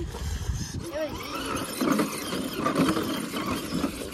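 Electric motor and gearbox of a radio-controlled rock crawler whining under throttle as it is driven against a rock crevice, the whine wavering up and down in pitch for the second half. A low rumble comes first.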